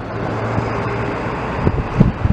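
Steady street traffic noise: a car engine's low hum over a continuous road rush, the hum fading about a second and a half in.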